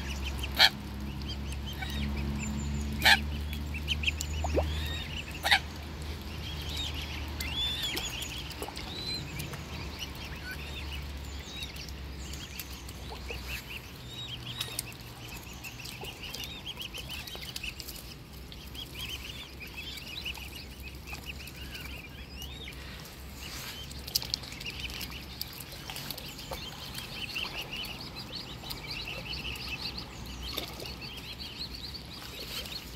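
Mute swan cygnets peeping continuously in many short, high calls as they feed. There are a few sharp clicks in the first six seconds and a low rumble over the first dozen seconds.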